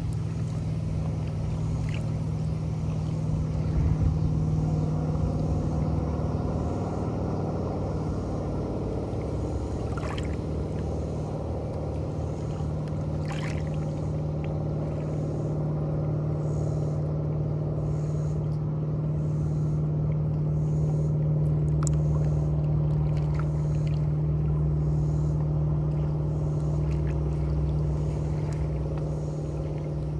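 Water lapping against shoreline boulders, with a few small splashes, under the steady drone of a motorboat engine running out on the lake.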